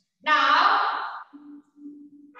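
A woman's voice making one drawn-out, wordless vocal sound lasting about a second, followed by a faint, steady low hum.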